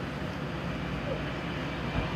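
Steady engine noise from a motor-race broadcast playing on a television, heard at a distance across the room.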